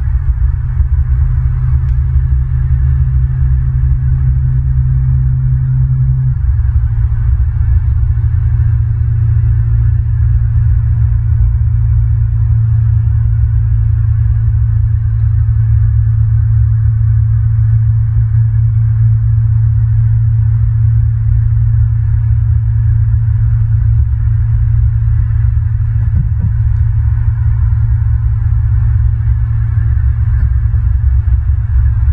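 A steady low rumble with a hum; the hum's pitch drops slightly about six seconds in.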